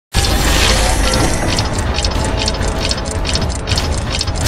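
Sound-effect gears in a mechanical intro: a sudden start with a heavy low rumble, then a steady run of metallic ratcheting clicks, about four a second.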